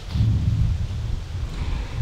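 Low, uneven rumble of wind buffeting an outdoor microphone.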